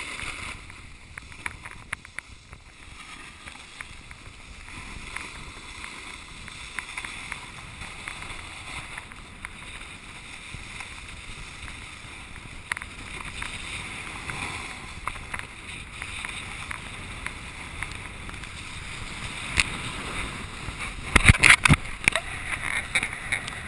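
Snowboard sliding and carving down packed snow: a steady scraping hiss with scattered short clicks from the board's edges. A cluster of loud knocks comes near the end.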